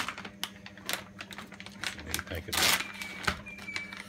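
Plastic frozen-fruit packaging being handled: crinkling with a run of small sharp clicks, a louder click at the very start, and a short rustle a little past halfway. A steady low hum runs underneath.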